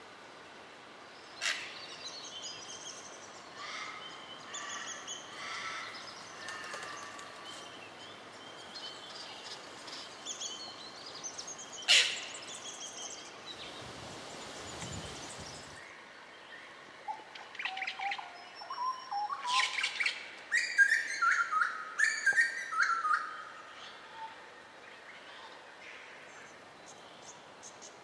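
Wild songbirds calling: scattered chirps and whistled notes, then a loud run of descending whistled phrases in the second half. Two sharp clicks, one near the start and one about halfway, and a brief rush of noise just after the second.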